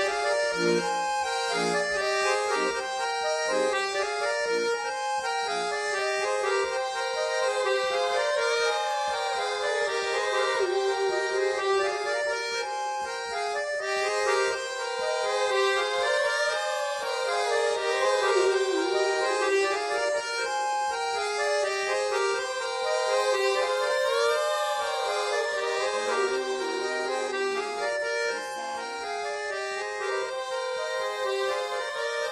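Instrumental break in a French cabaret song: an accordion plays a running melody over chords, with no singing. Pulsing low chords sit under the melody in the first few seconds.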